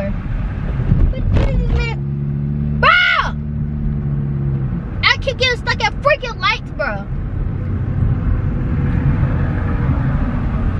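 Car cabin road rumble while driving, with a woman's short vocal bursts at intervals. A steady low hum comes in for a few seconds about two seconds in.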